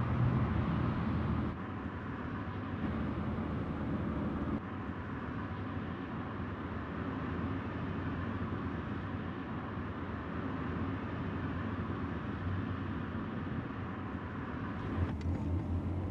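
Steady road and engine noise of a car driving, heard from inside the cabin: a low hum under a constant hiss of tyres and air.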